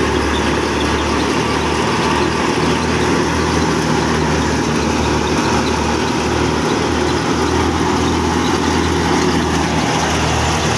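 Stationary wheat thresher running steadily with a continuous low mechanical hum while cut wheat is fed into it.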